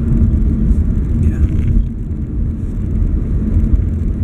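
A car driving, heard from inside the cabin: a steady low rumble of road and engine noise.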